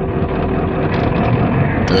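Diesel pickup truck's engine running steadily in first gear as it pulls away, heard from inside the cab with road noise.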